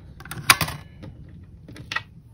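A penny pushed by finger through the slot of a digital coin-counting jar lid: one sharp click about half a second in, a few lighter clicks after it, and another click near the end.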